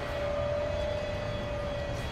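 City transit bus running close by: a low engine rumble under a steady, even-pitched whine.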